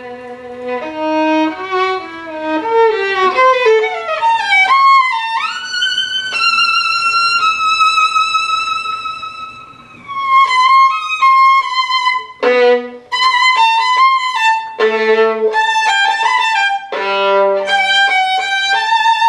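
Solo violin played with the bow: a low held note, then a stepwise climb that slides up into a long high note, held and fading about ten seconds in. A new phrase follows, with short low notes sounded between higher ones near the end.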